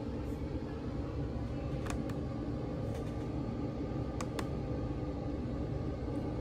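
Steady low room hum with two pairs of faint clicks, one pair about two seconds in and another a little after four seconds: a laptop touchpad being clicked to open a drive's Properties window.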